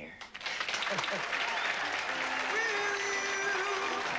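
Studio audience applauding and cheering, swelling up about half a second in and holding steady, with a few voices calling out over the clapping.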